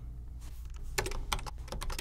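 Typing on a computer keyboard: a run of separate key clicks beginning about half a second in.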